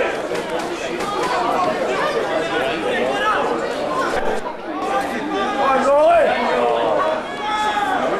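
Several people talking over one another: spectators chatting close to the microphone, with no single voice standing out.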